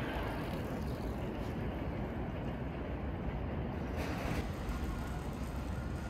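Steady street noise from road traffic: a continuous low rumble, with a brief rise about four seconds in.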